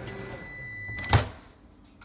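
Microwave oven humming at the end of a short heating cycle, with a high steady tone for about a second, then the door latch clacking open loudly.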